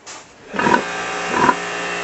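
A pressure washer starts about half a second in and runs with a steady motor hum and the hiss of its water spray, rinsing a sow. Two short grunts from the sow sound over it.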